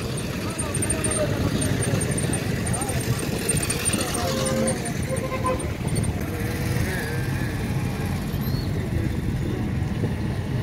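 Steady road and engine rumble heard from inside a moving vehicle in busy street traffic, with indistinct voices in the background. Two short beeps sound near the middle.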